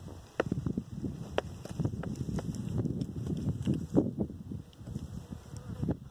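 Uneven low rumble with scattered small clicks and taps: wind buffeting a phone's microphone while it is handled and panned.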